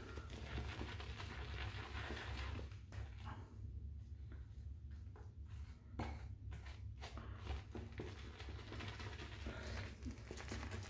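Faint swishing of a badger-hair shaving brush working sandalwood glycerin soap into lather in a small stainless steel bowl, with a few soft knocks, over a steady low hum.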